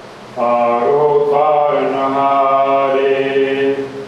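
A man chanting Gurbani in a slow, sung recitation, one drawn-out phrase of long held notes that begins about half a second in.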